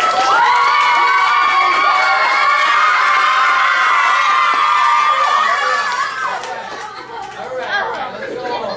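A class of children cheering and shouting together, with clapping, loud for about six seconds and then dying down.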